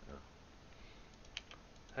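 A few faint clicks of a computer mouse and keyboard while a pattern piece is selected in the CAD program, the clearest about a second and a half in.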